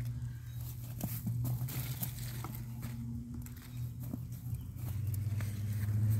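Swiss chard leaves rustling and scattered small clicks as the leaves are handled and clipped with scissors, over a steady low hum.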